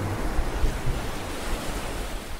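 Steady rushing of ocean surf, starting to fade near the end.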